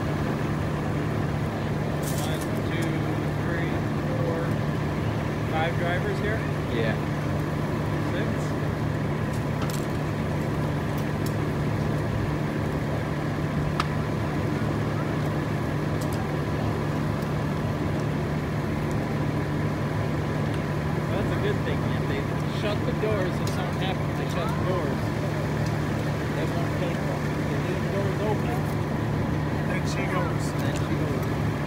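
A vehicle engine idling steadily, a constant low hum, with faint distant voices and a few sharp pops from a fully burning school bus.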